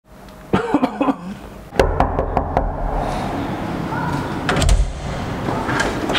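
Knocking on a door: a quick run of about five sharp knocks about two seconds in, with a few more knocks before and after.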